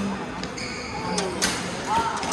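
Badminton rackets striking a shuttlecock in a rally: several sharp hits, the loudest two about a second and a half in and near the end, with brief squeaks of court shoes on the floor.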